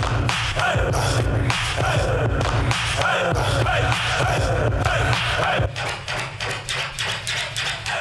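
Turntable scratching over a bass-heavy beat: repeated falling scratch strokes ride a steady bass line. A little before six seconds in, the beat thins out into quick chopped cuts.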